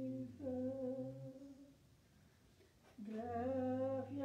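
Slow singing in long, held, hum-like notes. The voices trail off about a second and a half in and come back in about three seconds in.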